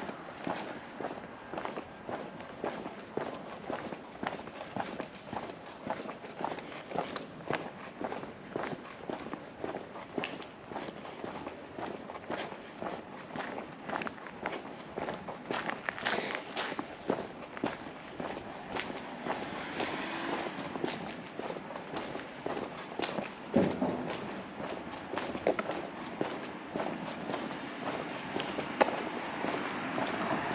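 A walker's footsteps on a paved sidewalk at a steady pace of about two steps a second, with one sharper knock about two-thirds of the way through. Near the end a car's engine and tyres grow louder as it approaches.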